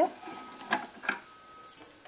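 Two light clicks about a third of a second apart from a pair of scissors being picked up and handled to cut the thread at the sewing machine.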